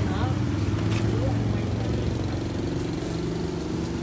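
A vehicle engine idling with a steady low hum, with a voice trailing off just at the start.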